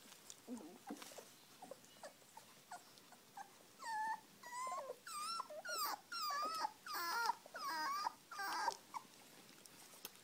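Newborn Dalmatian puppies nursing, one crying in a run of short, high, wavering whimpers and squeals that start about four seconds in and stop shortly before the end.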